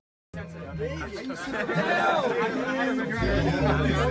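A moment of dead silence at a clip cut, then several people talking over background music with a steady bass line.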